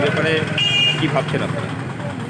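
A man speaking Bengali over a steady low rumble of street traffic, with a short, high two-note tone a little over half a second in.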